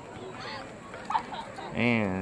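Distant voices shouting and calling across an open football field, with a close man's voice starting near the end.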